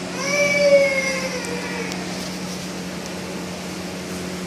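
A baby crying: one long wail that starts just after the beginning and fades over about two seconds, its pitch sagging slightly, over a steady low hum.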